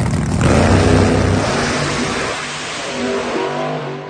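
Two pro-class drag racing cars launching off the starting line at full throttle, their engines loudest about half a second in and then falling away as the cars run down the track.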